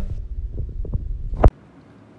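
Low, uneven thumping rumble with a few faint knocks, ending in a sharp click about one and a half seconds in, where the sound cuts off suddenly to faint room tone.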